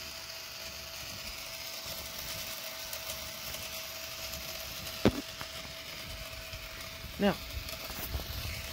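K'nex coin pusher running: its plastic gear train and pusher arm turning steadily, with a faint steady whine and one sharp click about five seconds in.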